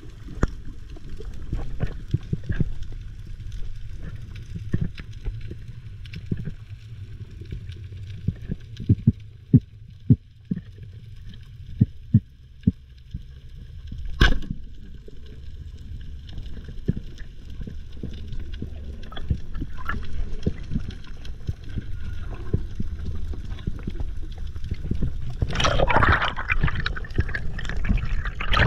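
Sea water gurgling and sloshing with a steady low rumble and scattered sharp clicks, the loudest click about fourteen seconds in. A louder rush of water comes near the end.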